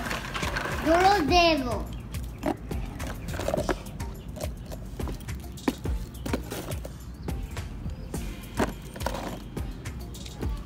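A high voice slides up and then down in pitch about a second in, a playful vocal sound rather than words. After that come scattered small knocks and clicks as small plastic toy monster trucks are handled and set down on dirt.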